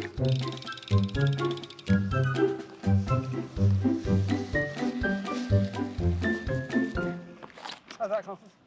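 Background music with a regular beat and a repeating bass line.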